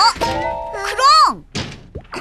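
Cartoon soundtrack: a short exclamation with a dull thud at the start, over light background music with held notes. About a second in, a character's voice slides up and back down in pitch.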